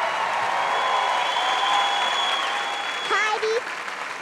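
A large studio audience applauding, with a voice heard briefly over it near the end.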